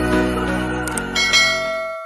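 Intro jingle music ending on a bell chime. About a second in, the chime strikes, and its clear tones ring on and fade away.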